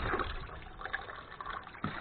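Water running and trickling unevenly from the outlet of a 12 V DC gear-motor-driven diaphragm pump as it pumps water into a bucket.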